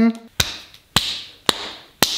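Three sharp claps about half a second apart, each trailing off in a short hiss.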